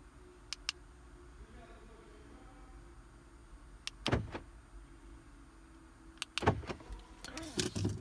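Scattered clicks and a few knocks from handling inside a car's cabin, the loudest knock about six and a half seconds in, over a faint low hum.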